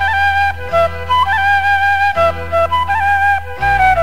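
A flute plays a melody in held notes with small ornaments over sustained bass notes, in an instrumental passage of a Malayalam film song with no singing.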